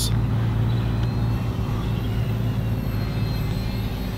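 Blade 70 S micro RC helicopter in flight, a steady low hum from its rotor with a faint high whine from its motors over it.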